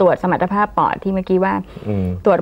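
Speech only: a woman talking in Thai.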